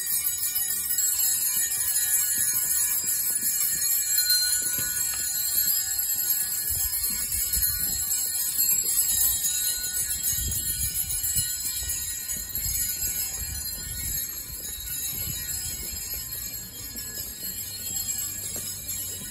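Loud, continuous jingling of shaken Schellen (jingle bells). Low thuds and rumbles join from about seven seconds in.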